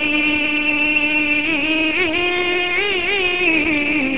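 A male naat reciter's voice holding one long sung note, with pitch ornaments wavering through it from about halfway in.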